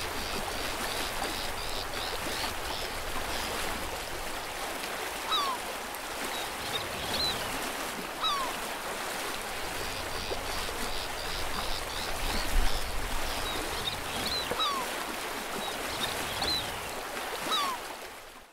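Water rushing and lapping as a steady hiss, with a bird giving a short descending call four times, several seconds apart, and fainter twittering in between.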